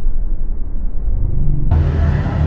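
Loud low rumble of a motor vehicle running close by; near the end it suddenly grows fuller, with a steady low hum.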